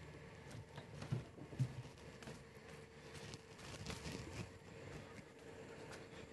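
Faint room tone with a steady low hum and a couple of soft thumps about a second in.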